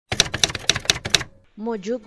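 Typewriter keys struck in a quick, uneven run of sharp clacks for about a second, stopping abruptly. A voice starts soon after.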